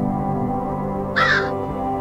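A single short crow caw a little over a second in, over ambient background music with steady sustained tones.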